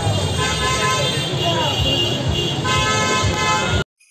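Crowd voices on a busy street with vehicle horns honking: two long, steady horn blasts over the chatter. The sound cuts off suddenly just before the end.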